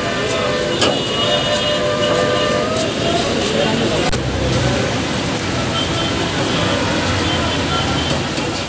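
Steady city traffic noise with people's voices nearby.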